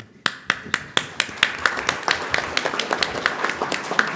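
Conference audience applauding. It starts with one person's evenly spaced claps, about four a second, and fills out into steady applause from several people.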